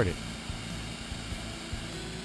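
Coring machine's motor running steadily with a low hum, the core bit turning free and not yet cutting into the asphalt.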